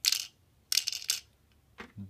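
Small plastic LEGO crystal pieces dropped into the brick-built tank's hull, clattering against the plastic twice: once right at the start and again about three-quarters of a second in.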